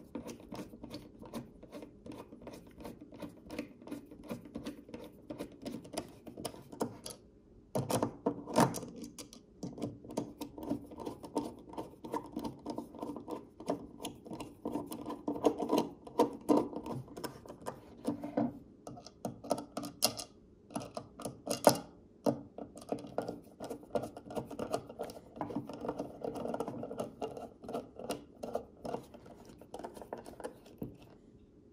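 A small hand screwdriver driving the Torx screws that fasten micarta handle scales onto a fixed-blade knife: a continuous run of quick, light metal clicks and scrapes as the bit turns in the screw heads.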